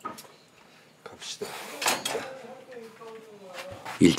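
Stainless-steel bowls and dishes being handled at a kitchen sink: a few separate clinks and knocks, most of them in the first two seconds.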